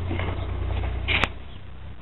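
Low steady rumble of handling and movement, with one sharp click or knock a little over a second in.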